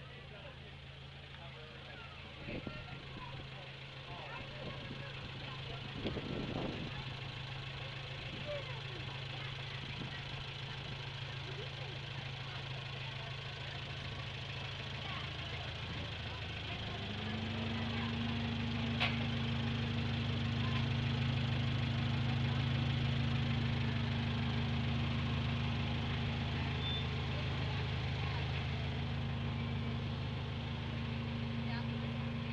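The engine of a miniature steam-style zoo train locomotive idling with a steady low hum. The hum grows louder as it goes on, and a second, higher steady hum joins about halfway through.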